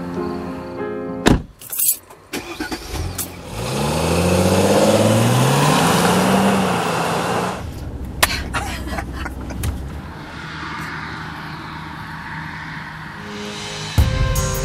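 A car engine accelerating, its pitch climbing twice, then steady engine and road noise heard from inside the moving car. Music plays briefly at the start.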